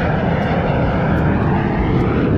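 Fighter jet flying past nearby: a loud, steady jet-engine noise with no single boom.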